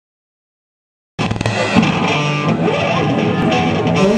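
Silence for about the first second, then a live rock band cuts in suddenly and plays loudly, with electric guitar to the fore.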